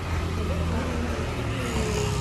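Steady low rumble of street traffic, with faint voices mixed in.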